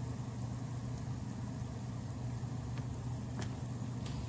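Oil frying a tempering of dried red chillies, mustard seeds and dals in a small pan, with a faint sizzle and a couple of small pops near the end, over a steady low hum.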